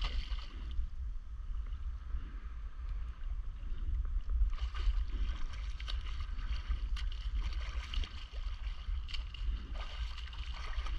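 Water splashing and sloshing close by, busier from about halfway in, over a steady low rumble of wind on the microphone.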